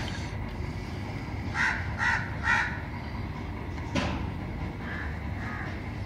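A bird calling three times in quick succession, about half a second apart, with two fainter calls near the end, over a steady low hum. A light knock sounds about four seconds in.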